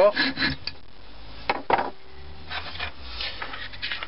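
A few quick rasping strokes of a small hand saw cutting through a wooden dowel, then two sharp knocks and light scraping as the wood is handled.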